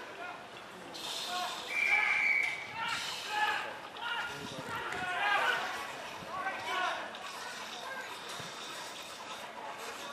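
Players and spectators calling out across the ground during an Australian rules football game, with a short steady whistle blast about two seconds in.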